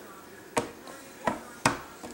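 Three short, sharp clicks: one about half a second in, then two close together in the second half.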